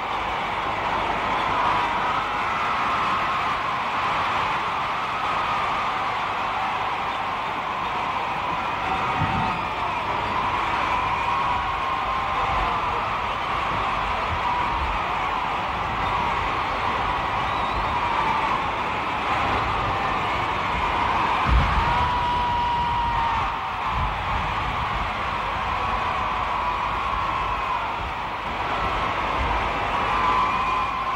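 A huge crowd cheering and calling without a break, a dense mass of voices with single shouts rising above it now and then.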